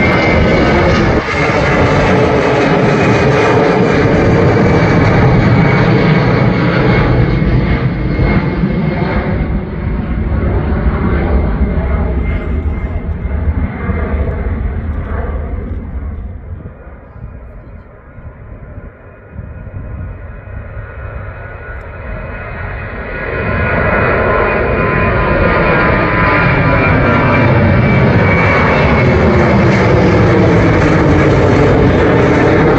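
Jet airliner engines at take-off power as the plane climbs out overhead, their whine slowly falling in pitch. The noise fades away about halfway through, then a second departing jet's engine noise builds up again.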